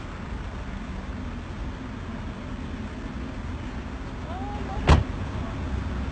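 A Ferrari convertible's door shutting with one sharp thump about five seconds in, over a steady low rumble.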